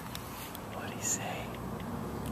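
Faint hushed whispering with light clicks and rustles of a phone being handled close to the microphone.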